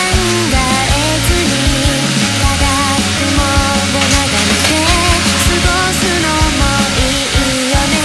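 Loud background rock music with a driving drum beat and a melodic line over it.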